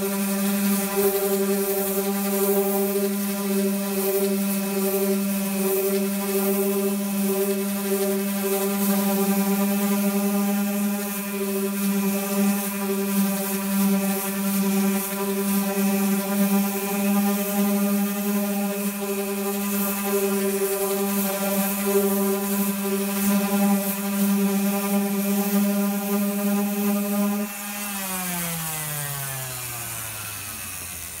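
Random orbital sander running steadily on a fiberglass-and-epoxy wing patch, a constant motor hum under the hiss of the disc abrading the surface as the patch is sanded down to contour. Near the end it is switched off and spins down, its pitch falling away.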